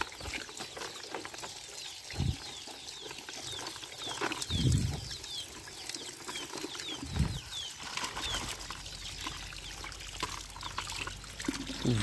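Running water pouring into a plastic basket of toys, splashing and trickling as a hand stirs the toys in the water, with a few soft thumps.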